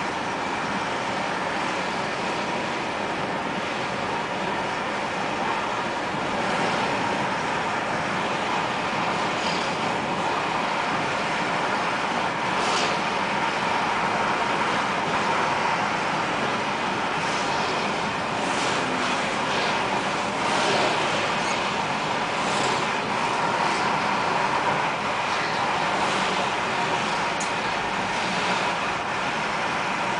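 Steady road noise inside a moving car on a busy highway: engine, tyres and wind blending into an even rush, with now and then a brief hiss from passing traffic.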